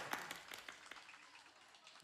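Scattered clapping from a small audience, thinning out and dying away within about the first second.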